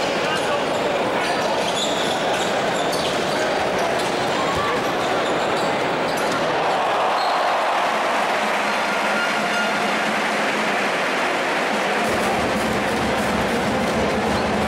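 Basketball arena crowd chatter with the ball bouncing on the court and sharp high squeaks in the first few seconds. A low steady hum comes in near the end.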